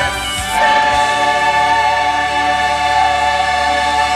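Mixed church choir of men's and women's voices singing, moving onto a long held chord about half a second in.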